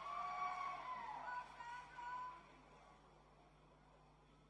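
A high, unaccompanied voice holds and bends long notes, gliding down in pitch, and dies away about two and a half seconds in.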